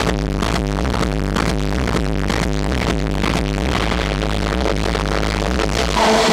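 Techno DJ set played loud through a festival sound system: a steady kick beat, about two a second, over a sustained deep bass. A hiss-like sweep builds in the upper range over the last two seconds.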